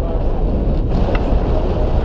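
Airflow buffeting the camera's microphone during a tandem paraglider flight: loud, steady wind noise without a break.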